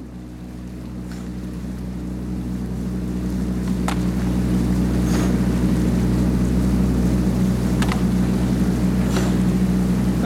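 Small motorboat engine running steadily close by, growing louder over the first few seconds and then holding, with a few faint sharp clicks over it.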